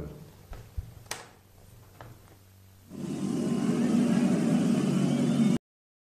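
A loud, steady roar of noise sets in about three seconds in and cuts off abruptly shortly before the end. Before it there are only a few faint clicks.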